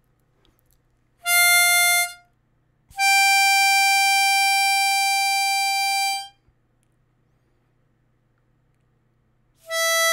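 Diatonic harmonica notes played one at a time: a short note, then a steady blow note on hole 6 (G) held about three seconds, then another short note near the end.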